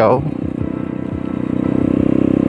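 Motorcycle engine running at cruising speed as the bike is ridden along a forest track, a steady pulsing hum that grows slightly louder in the second half.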